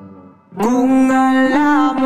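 Electric guitar playing a lead melody. The notes before fade almost to silence, then about half a second in a sustained note starts and is bent upward slightly twice as it moves into the next notes.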